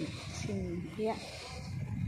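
A woman's voice saying a few words in Thai, over a steady low rumble of outdoor background noise.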